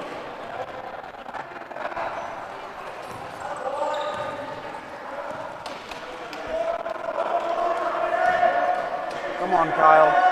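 Wheelchair basketball game sounds in a gym: a basketball bouncing on the hardwood court amid indistinct voices echoing in the hall, louder in the second half.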